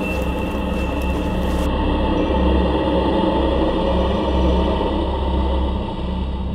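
Dark, suspenseful background score: a sustained drone with held mid-range tones over a deep, pulsing bass.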